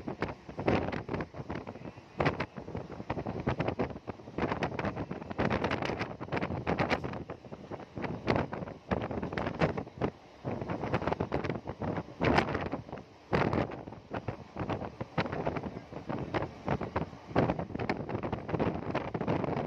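Wind rushing and buffeting the microphone held at the open window of a moving passenger train, in uneven gusts, over the train's running noise.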